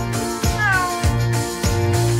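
A single cat meow about half a second in, falling in pitch, over background music with a steady beat.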